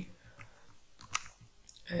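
Three light, isolated clicks from computer keyboard and mouse use, the loudest a little past the middle, over quiet room tone.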